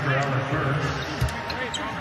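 Basketball arena game sound during a break in the commentary: a steady low hum with faint voices and a single sharp knock a little over a second in.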